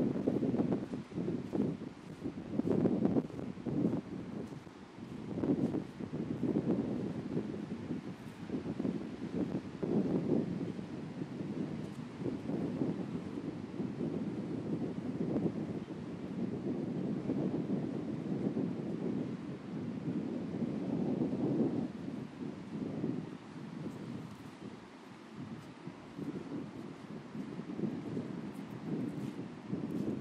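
Wind buffeting the microphone in uneven gusts, a low rumbling noise that swells and fades every second or two.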